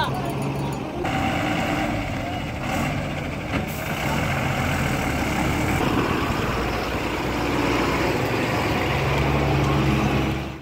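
Diesel engine of a large goods truck running steadily at close range, mixed with motorcycle engines in jammed road traffic and the voices of a crowd.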